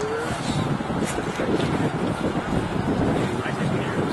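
Indistinct distant voices of rugby players calling out on the field over a steady outdoor rumble.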